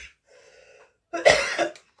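A woman coughs hard a little over a second in, after a fainter throat sound; the cough cuts into her speech.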